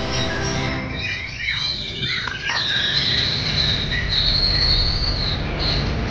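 Caged contest songbirds singing: quick sweeping whistled notes, then a long high whistle held for a couple of seconds. Background music is heard under the first second.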